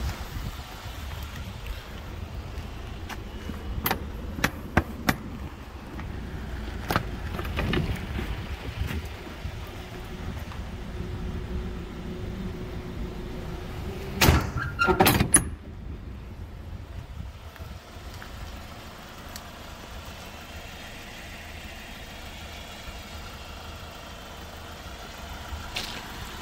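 Scattered sharp clicks and knocks from a box truck's cargo body and door latches being handled, with a loud clatter of knocks about 14 to 15 seconds in, over a low steady rumble.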